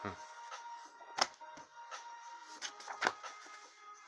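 Background music plays while comic books are handled: a few sharp knocks and slides as one comic is pulled away and the next is laid down on the table. The loudest knocks come about a second in and near three seconds.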